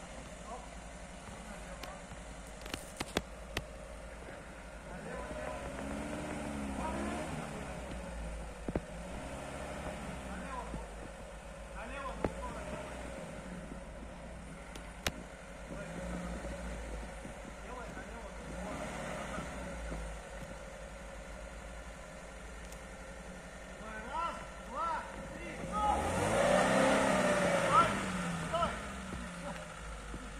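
Lada Niva's four-cylinder engine revving up and down again and again as the car churns through mud, with a few sharp knocks along the way. The hardest and loudest revving comes near the end.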